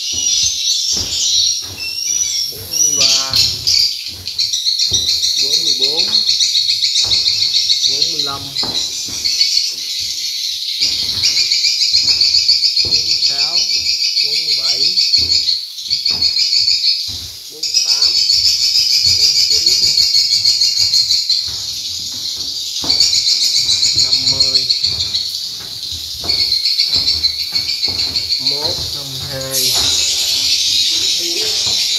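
Swiftlet calls: a dense, high, rapidly pulsing chirring that runs on with a few brief dips, with shorter twittering chirps over it.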